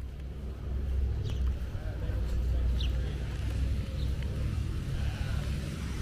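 City street background: a steady low rumble of traffic, with a few brief high chirps over it.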